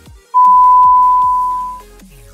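A loud, steady, single-pitch TV test-pattern beep, the tone that goes with colour bars, sounding for about a second and a half and dying away near the end, over soft background music.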